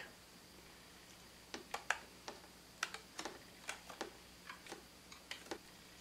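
Faint, irregular small clicks and ticks, about a dozen over four seconds and starting about a second and a half in, as a strip of tacky dried liquid latex is slowly peeled off a plastic tray lid.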